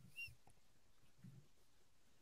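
Near silence: one faint short squeak just after the start, then room tone.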